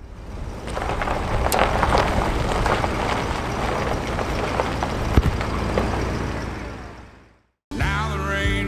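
A 1956 Buick Special under way, its 322 cubic inch Nailhead V8 running with road and wind noise, fading in at the start and fading out near the end.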